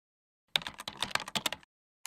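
Computer keyboard typing sound effect: a quick run of key clicks lasting about a second, starting about half a second in.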